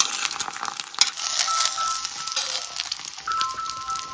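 Egg frying in hot oil in a pan, sizzling, with a metal spoon clicking and scraping against the pan. About a second in, a phone starts ringing with a repeating high two-note tone: an incoming video call.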